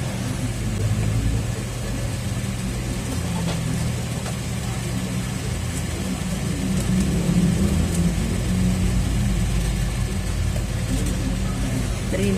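A steady low engine-like hum.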